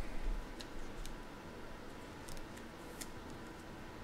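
Trading cards being handled on a table: faint handling noise with a few scattered light clicks, about six in all.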